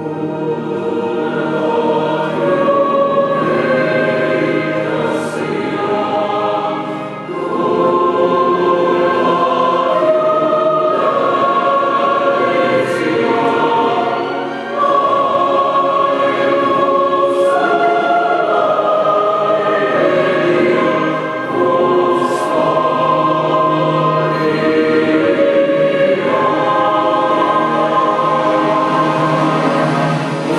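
A choir sings a slow, solemn anthem-like piece in long held notes, with short pauses between phrases about every seven seconds.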